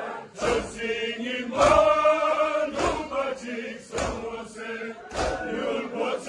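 A crowd of male mourners chants a noha together in a group lament, punctuated by loud unison chest-beating (matam) strikes about once every 1.2 seconds.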